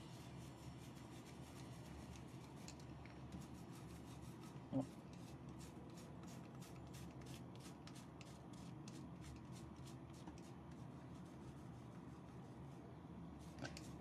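A paintbrush stroking and dabbing paint onto the back of a glass plate: faint, quick brushing strokes a few times a second. A brief murmur-like sound comes about five seconds in.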